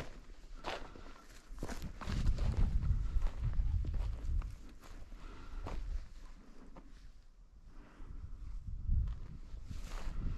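A hiker's footsteps on a trail, a crisp step about every half second to second, over a low rumble that swells from about two to four seconds in and again near the end.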